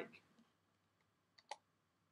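A computer keyboard key being typed: a faint tick and then a sharper click about a second and a half in.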